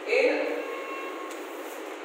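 A man's voice says a short word or phrase, then pauses, leaving quieter room sound.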